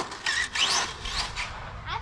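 Small electric RC buggy driving off across rubber playground surfacing: short bursts of motor whine and tyre noise, with a quick rising whine about half a second in, dying away after about a second as it moves off.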